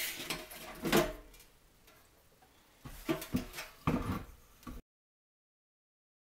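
Knocks and rubbing of a sheet-metal tube and a vacuum-cleaner motor being handled on a wooden workbench, with one loud clunk about a second in and a run of smaller clunks later. The sound cuts to dead silence about five seconds in.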